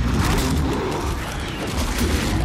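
Film sound design of a man's scream as he transforms into a werewolf, the cry layered with a dense, heavy low rumble.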